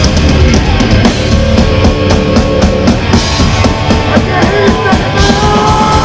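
A heavy metal band playing live, with the drum kit to the fore in quick, dense hits over a steady low bass and guitars.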